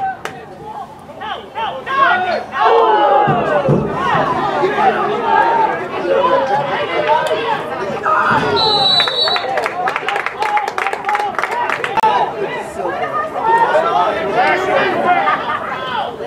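Many voices of players and spectators cheering and shouting over one another, swelling loud about two and a half seconds in. A short high whistle blast sounds near the middle.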